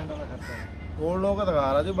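Men talking outdoors, with a man's drawn-out 'ji' in the second half. A short bird call comes in the first second, during a lull in the talk.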